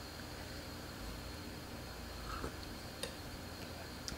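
Quiet kitchen room tone: a steady faint hum and hiss, with a few faint small clicks, one about two and a half seconds in and one about three seconds in.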